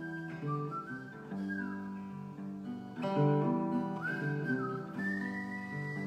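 Acoustic guitar playing a chord pattern with a whistled melody over it, the whistle stepping and sliding between notes.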